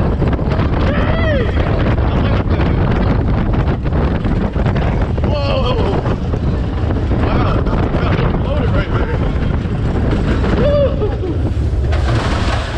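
Wind buffeting the microphone over the rumble of a suspended swinging roller coaster running along its track. Riders give short rising-and-falling yells about a second in, at about five and a half seconds, and near the end.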